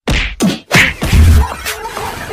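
Outro sound effects: two quick falling whooshes, then a hard hit with a deep boom about a second in.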